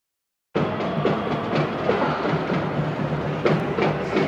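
Street parade with a marching band: a dense, steady din of drums and crowd noise that cuts in abruptly about half a second in.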